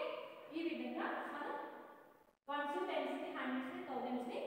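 A woman speaking, in a room, with a brief cut to silence about halfway through.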